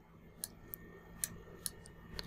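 Faint computer mouse clicks, about five at irregular intervals, over a low steady hum.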